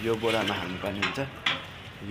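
A voice speaking briefly at the start, then rustling and handling noise with a sharp click about a second and a half in.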